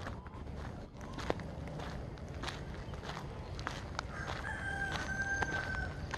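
Footsteps on a gravel path, with a rooster crowing once: a long, steady call starting about four seconds in.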